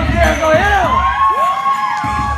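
Audience screaming and cheering for a dancer, with several overlapping high shrieks that rise and fall and one long held scream in the second half, over hip-hop dance music.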